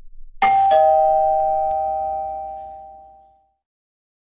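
Two-note ding-dong doorbell chime: a higher note about half a second in, then a lower note a moment later, both ringing on and fading away over about three seconds.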